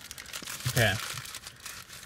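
Paper burrito wrapper crinkling as it is handled and peeled back by hand.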